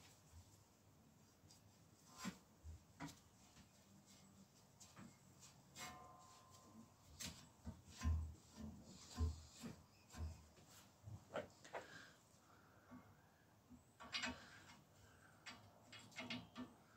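Faint, scattered clicks, knocks and rubbing of gloved hands handling a thread tap and tap wrench at a steel bike frame's derailleur hanger, with a few duller knocks about eight to ten seconds in.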